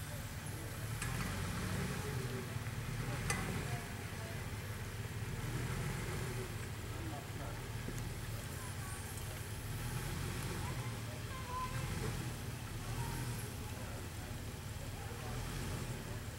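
Jeep Wrangler TJ engine running low and steady as it crawls slowly down a rocky trail, with occasional light clicks and crackle from the tyres working over rock and gravel.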